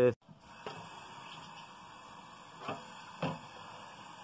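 Kitchen tap running steadily into a stainless steel sink, fairly quiet, with three brief faint knocks.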